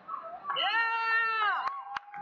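A person's voice: one long, high-pitched call that rises and then falls, lasting about a second, followed by two sharp clicks near the end.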